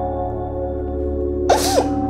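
Ambient film score of held, bell-like tones over a low drone, and about one and a half seconds in a woman's short, sharp sob.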